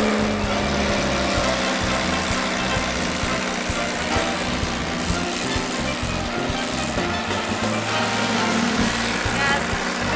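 Dune buggy engine running steadily as it drives, with wind rushing over the microphone.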